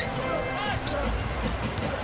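A basketball being dribbled on a hardwood arena court during live play, over the general noise of the arena.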